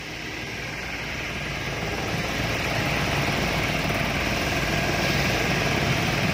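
Belt-driven electric air compressor running with a steady, quiet hum and rumble, growing louder over the first two seconds.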